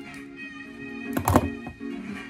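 Background guitar music, with one thunk about a second and a quarter in as a pair of scissors is set down on a plastic cutting mat.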